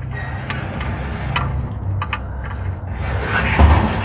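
Scattered light clicks and knocks of hand work at a car's oil pan drain plug during an oil change, with a heavier knock near the end, over a steady low hum.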